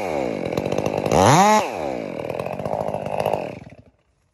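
Chainsaw engine coming down off a rev, revving up again about a second in, then running lower and cutting off shortly before the end.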